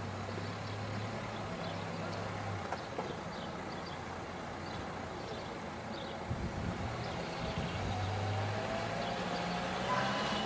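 Outdoor traffic noise: a motor vehicle's engine hum that fades in and out over a steady background rush.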